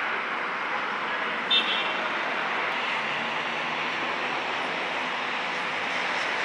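Steady city traffic noise rising from the roads below, with a brief high beep about a second and a half in.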